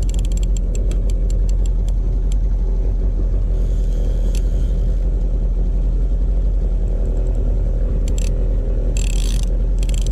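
Boat outboard motor running steadily while trolling, with bursts of rapid clicking from the fishing reel being handled, mostly in the first couple of seconds and again near the end.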